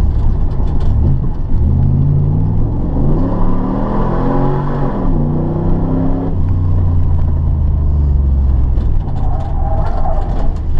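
1994 Camaro Z28's LT1 5.7-litre V8 heard from inside the cabin under hard driving: the revs climb for about three seconds, drop back, then hold lower and steady, dipping again near the end.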